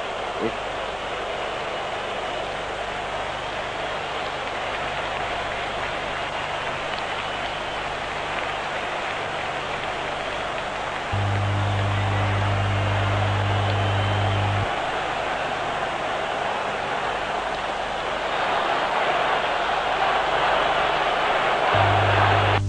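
Stadium crowd noise: the dense, steady sound of a large football crowd, growing louder near the end. A low steady hum from the old recording comes in for about three seconds in the middle.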